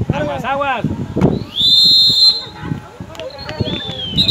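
Referee's whistle blown in one long, loud blast about a second and a half in, with a second blast starting near the end: the whistle ending the first half. Shouting voices around it.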